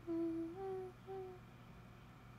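A young woman humming a short phrase of three notes: a low note stepping up to a higher one, then after a brief gap a short repeat of the higher note, over by about a second and a half in.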